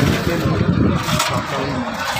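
People talking over a loud, low rumble of background noise, heaviest in the first second.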